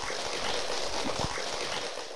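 A small audience applauding: a steady patter of many hands clapping.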